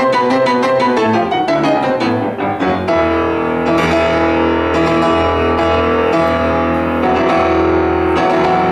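Grotrian grand piano played solo: quick, rapidly repeated notes, then about three seconds in, full held chords over a deep bass.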